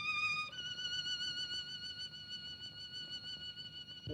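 Film-score music: a violin plays a high note with vibrato, then steps up to a higher note about half a second in and holds it.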